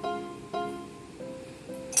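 Background music of plucked strings, a new note or chord about every half second, each ringing on and fading.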